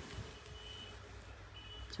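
Faint high-pitched electronic beeping, two short beeps about a second apart, over a low steady background hum.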